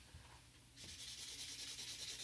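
Felt-tip highlighter rubbing back and forth across paper, coloring in a written word. It begins a little under a second in as a steady, scratchy swishing.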